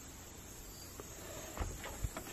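Steady, faint, high-pitched insect chirring in the background, with a few soft low thumps near the end.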